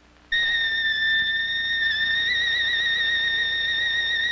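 A trumpet enters after a brief hush and holds a single very high note with a slight wavering shake.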